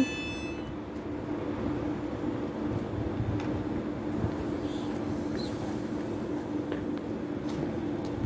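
Passenger train standing at the platform, its underfloor equipment giving a steady hum: one held tone over a low rumble.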